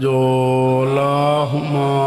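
A man's voice chanting into a microphone in long, steady held notes, with a brief break about one and a half seconds in before the next held note. It is the drawn-out recitation of salawat (durood on the Prophet and his family).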